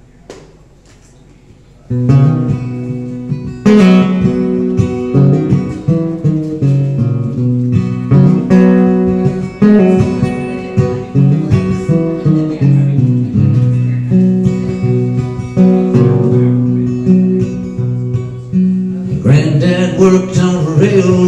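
Solo acoustic guitar playing a song's instrumental introduction. It starts suddenly about two seconds in, after a near-quiet pause.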